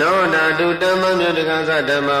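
A Buddhist monk's single male voice chanting Pali scripture in a steady recitation tone. He starts a new phrase right at the beginning after a breath and holds it on without a break, the pitch gliding gently between syllables.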